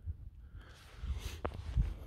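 Handling noise from a hand-held camera: a low rumble with a few short, soft clicks and knocks.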